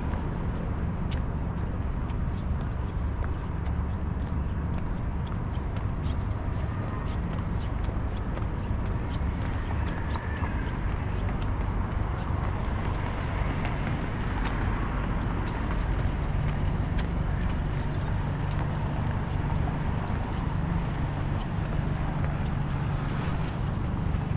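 Street ambience: a steady low rumble of road traffic, with the walker's footsteps ticking on paving throughout.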